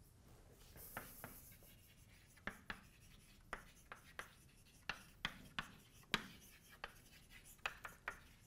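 Chalk writing on a blackboard: a faint string of irregular taps and scratches as the chalk strikes and drags across the board.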